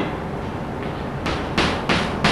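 Chalk drawing short horizontal lines on a blackboard: after a second of low room hum come three quick scraping strokes, about three a second.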